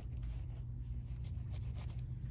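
A wipe rubbing across a gel nail tip in a run of short, quick, scratchy strokes, about four or five a second, over a steady low hum.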